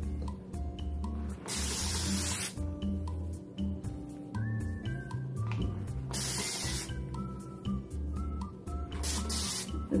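Continuous-mist spray bottle spraying water onto a curly wig in three bursts of about a second each, over background music.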